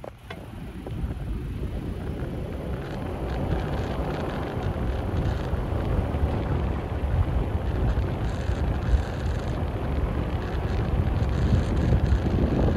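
Wind rushing over the microphone of a camera held up through the open sunroof of a slowly moving car, over a low road rumble. The rush grows louder over the first few seconds as the car gathers speed, then holds steady.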